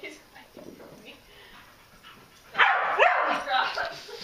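A dog barking and yelping excitedly: quiet at first, then a loud burst of about a second, two-thirds of the way in, with a rising yelp in it.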